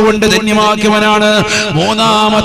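A man's voice preaching in a sing-song delivery with long, steadily held notes, amplified through a microphone.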